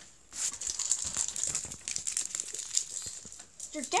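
Trading cards and torn foil booster-pack wrappers being handled, a dense run of small crinkles and rustles that starts just after the beginning.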